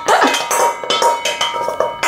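Wooden spoon scraping and knocking around the inside of a stainless steel mixing bowl. It is a quick run of knocks and scrapes, and the metal bowl rings between them.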